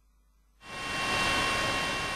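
Dead silence, then a steady hiss with a faint thin whine in it fades in just over half a second in and holds.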